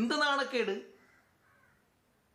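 A man's voice in a short, drawn-out utterance whose pitch rises and falls, breaking off under a second in; the rest is near silence.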